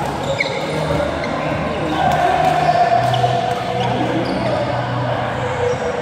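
Badminton rally in a large echoing hall: a few sharp racket strikes on the shuttlecock and footfalls on the court floor, with players' voices calling over a steady hall hum.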